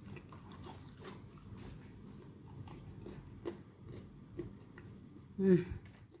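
A person chewing a piece of fried Maggi-noodle and egg murtabak, a scatter of faint clicks, with an approving "hmm" near the end.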